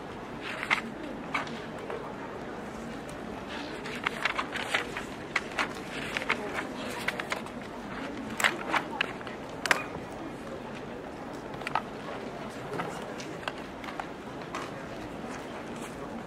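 Classroom background: an indistinct murmur of voices with a scatter of sharp clicks and taps, busiest in the middle and thinning out towards the end.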